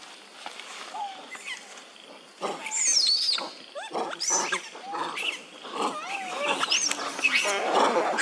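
Macaques calling in a flurry of short, high squeals and screams that sweep up and down in pitch, starting about two and a half seconds in and coming faster toward the end.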